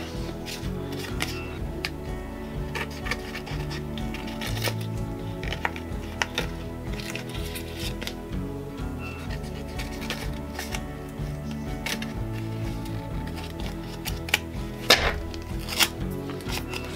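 Soft background music, with faint taps and rustles of hands handling a small paper card and a craft tool. A louder, sharp paper sound comes near the end as the card's edge is torn by hand.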